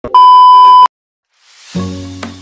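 A loud, steady single-pitch beep, the test tone that goes with TV colour bars, lasting just under a second and cutting off suddenly. After a short silence, music fades in about a second and a half in.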